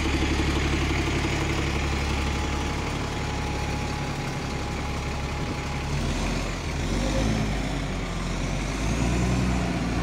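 A modern single-deck service bus's engine running steadily as the bus pulls away around a bend. About six seconds in the sound changes, and another vehicle's engine builds near the end.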